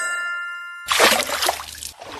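A bright ding that rings on in several clear tones and fades out within the first second. Then a louder wet, squelching sound as a spatula scoops and smears thick gel face mask.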